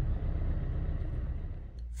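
Suzuki Swift petrol engine idling steadily, a low rumble heard from inside the cabin. It keeps running with a new crankshaft sensor fitted; before the repair the faulty sensor made it start and then cut out.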